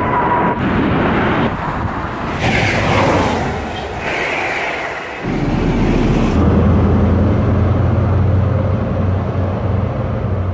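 A run of outdoor rail and aircraft recordings cut together. Jet airliner noise comes first, then a train at a station platform from about two seconds in. From about five seconds in, the diesel engines of a high-speed train pulling into a platform make a steady low drone.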